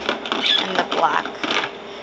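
Glass nail polish bottles clinking and clattering against each other and a clear plastic drawer as they are moved around by hand, in a few short sharp knocks.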